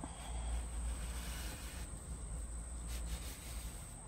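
Faint rustling of a cotton drawstring being yanked out through the satin casing of a pointe shoe, mostly in the first two seconds, over a low steady rumble.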